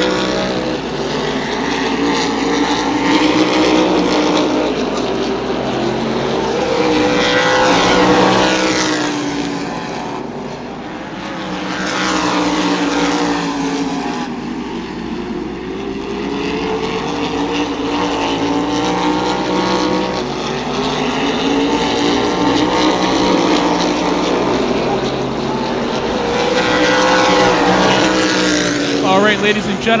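Open-wheel modified race cars running at racing speed around a short oval, their engines swelling and fading again and again as the cars go by, the pitch dropping as each passes.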